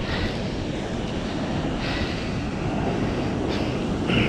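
Steady wind rumble on the microphone with the sea washing against the shore rocks, the wash swelling briefly a few times.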